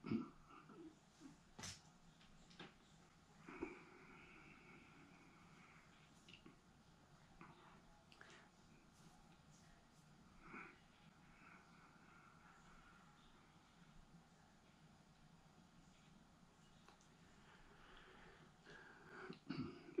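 Near silence: quiet room tone with a few faint, short noises scattered through it.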